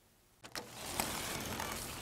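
Silence for about half a second, then a click and a steady hiss of background noise, with a second click about a second in; the hiss eases slightly towards the end.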